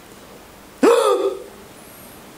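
A single short, sharp vocal cry from a man about a second in, its pitch jumping up and then falling away over about half a second.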